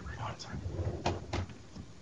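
Two sharp knocks about a third of a second apart, about a second in, over faint murmuring voices in a meeting room.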